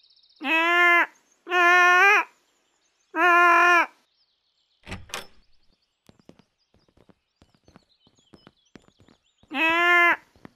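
Doorbell buzzer sounding three times at one steady pitch, each buzz a little under a second long. A door thunks open about five seconds in, with faint bird chirps after it, and two more buzzes come near the end.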